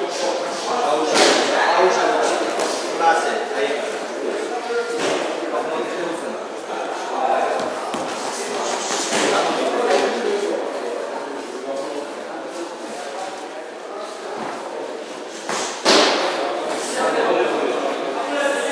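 Boxing gloves landing punches in a sparring bout: scattered sharp thuds and slaps, the loudest near the end, over voices in an echoing hall.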